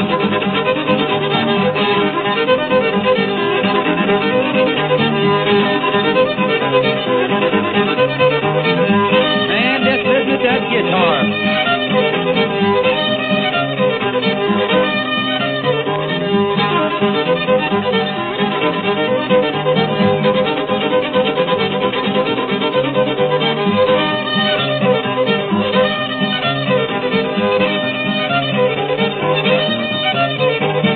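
Old-time hillbilly fiddle tune from an early country string-band record: the fiddle leads over a steady rhythmic backing.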